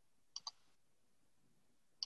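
Near silence with two quick clicks in close succession about a third of a second in.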